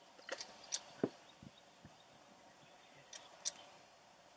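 Quiet outdoor background hiss with a handful of short, sharp ticks scattered through it: a cluster in the first second and two more near the end.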